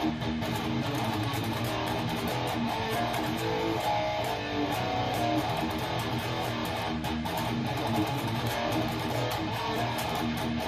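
ESP M-II electric guitar played through an EVH amplifier head and cabinet with high-gain distortion: fast-picked metal rhythm riffing. The amp is heard through a phone's built-in microphone, not mic'd up.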